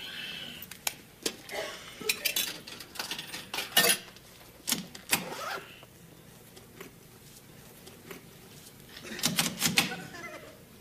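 Coins clinking and sharp clicks and clunks from a soda vending machine being worked, with a dense run of clatter near the end.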